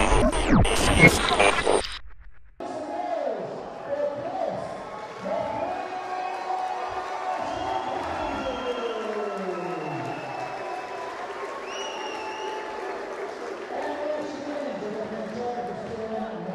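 A loud intro music sting for about the first two seconds, cut off abruptly. Then a ring announcer's drawn-out calls over a PA in a reverberant hall, with a crowd murmuring underneath.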